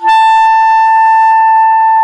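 A wooden clarinet, a 1940s Evette Schaeffer, plays one long, steady high note, held without a break in a slow solo melody.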